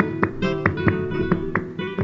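Flamenco guitar playing a short bulerías passage of sharp strummed chords and plucked notes between sung lines. The sound is narrow and lo-fi, as on an old recording.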